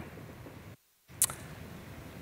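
Low, steady room tone that cuts to dead silence for a moment, then one brief, sharp, high click a little over a second in.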